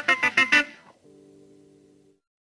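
Guitar playing a fast run of evenly spaced notes, about six a second, that stops about half a second in and dies away. A faint held low note then rings and cuts off near the end.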